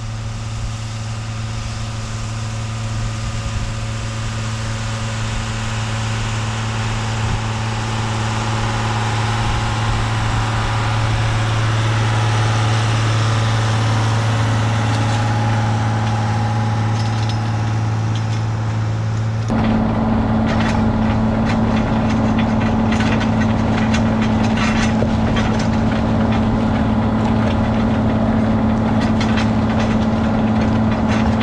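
John Deere 7810's six-cylinder diesel engine running steadily under load while pulling a moldboard plow, growing louder as the tractor approaches. About two-thirds through, the sound jumps to close range at the plow, where the engine hum comes with continual clicking and rattling from the plow frame and the turning soil.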